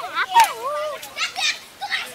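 Players and young onlookers shouting and calling out during a kabaddi raid, the voices rising and falling in pitch, loudest about half a second in.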